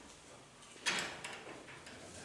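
A short scraping rustle about a second in, followed by a couple of faint knocks: a man settling into his seat at a meeting table and handling things on it.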